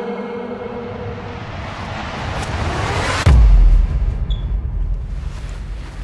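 Trailer sound design: a noise swell rises for about three seconds, then breaks into a sudden deep bass boom that rumbles and slowly fades.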